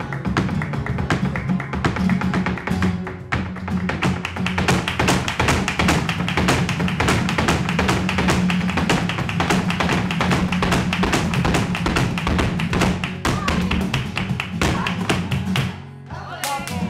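Live flamenco alegría: rapid handclaps (palmas) and the dancer's heeled footwork (zapateado) beating fast over flamenco guitar. The strokes grow denser toward the close and all stop together just before the end.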